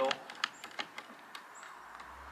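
A few sparse light clicks and taps from hands working a string trimmer clamped by its handle to a portable workbench with a bar clamp.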